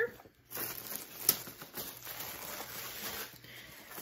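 Tissue paper rustling and crinkling as it is handled and unfolded, with one sharp snap a little over a second in.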